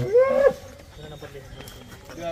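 A cow mooing: the end of one call, rising in pitch and cutting off about half a second in.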